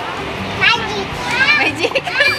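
Schoolchildren's voices chattering and calling out at play, several high-pitched voices overlapping.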